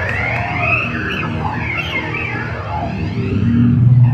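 Live rock band heard from the audience: electric bass holding low notes under bending, wavering guitar tones, with the bass swelling louder near the end.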